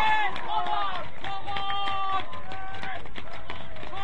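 Voices shouting and cheering just after a goal in a football match, with several long held shouts one after another.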